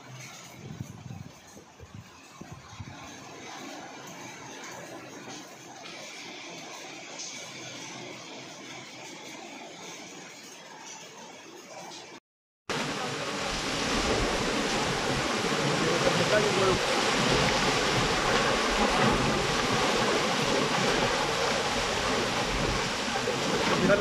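Quiet outdoor wind noise for about the first half. After a brief cut comes a much louder, steady rushing roar of water and debris pouring down a rocky hillside in the storm, with a few voices over it.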